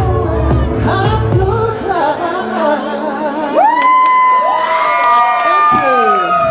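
Live pop song with a woman singing over a backing track; the backing music ends about two seconds in, and long high held voice notes and audience cheering follow near the end.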